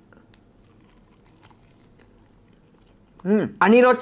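A person quietly chewing a mouthful of boiled chicken, with a few faint soft mouth clicks. A man's voice comes in near the end.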